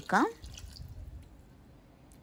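Cold water poured from a glass into a plastic blender jar over lime wedges: a faint splashing trickle that dies away about a second and a half in.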